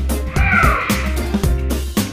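Background music with a steady beat, over which a single cat meow, falling in pitch, sounds about half a second in and lasts under a second, most likely a comic sound effect added in the edit.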